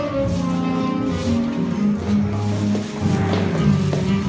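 Recorded music played through a Topp Pro powered PA loudspeaker on a stand: a steady bass line under sustained notes that change every half second or so.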